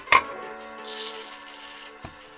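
A sharp click of a plastic Lego baseplate on a wooden table, then small plastic Lego round pieces rattling in a palm for about a second, over background music.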